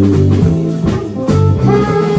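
Live band playing: bass guitar walking through stepped low notes under keyboard and drums, with a long held note coming in a little over halfway through.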